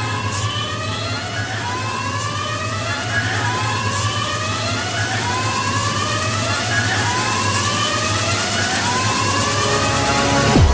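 A 1990s trance record in a build-up section. A siren-like synthesizer sweep rises over and over, about once a second, above a steady low bass drone, and the whole grows slowly louder.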